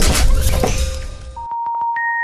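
Logo intro sound effects: a loud, noisy shattering crash that fades over the first second and a half, then a few quick sharp clicks and a steady electronic beep tone that starts near the end.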